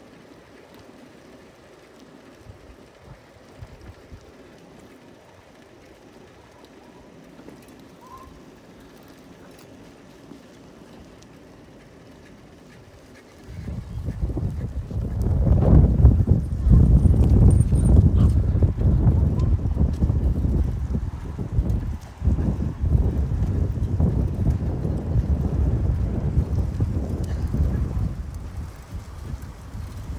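Low, quiet outdoor background for the first half. Then, about halfway through, loud irregular rumbling wind buffets the microphone as the bicycle rides along, easing a little near the end.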